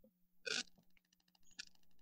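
A person's brief breathy vocal noise at the microphone about half a second in, then a few faint clicks over a low steady hum.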